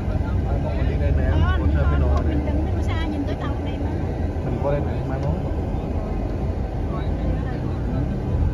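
Steady low road and engine rumble inside a moving car's cabin, a little heavier in the first few seconds. Faint voices speak quietly now and then over it.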